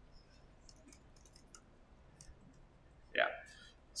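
Faint, scattered clicks from working a computer while the browser page is moved to a new section. A man says a short word about three seconds in.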